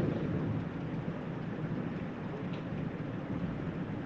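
Steady low rumbling background noise with no distinct events, in a pause between a preacher's sentences over a microphone.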